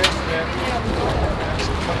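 Indistinct voices of people talking in the background over a steady low rumble, with a single sharp click right at the start.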